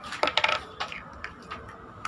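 Small cosmetic jars and their lids clicking and knocking together as they are handled: a quick run of sharp clicks in the first second, then a few lighter ones.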